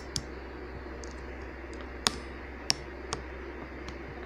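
A handful of sharp, short clicks and taps at irregular intervals, the loudest about two seconds in, over a low steady hum.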